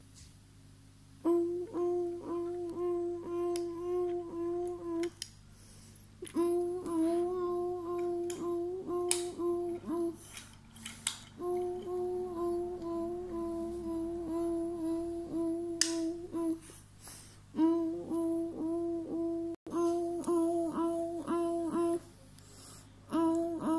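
A child's voice humming one repeated note in quick pulses, about three a second, in four stretches with short pauses between them.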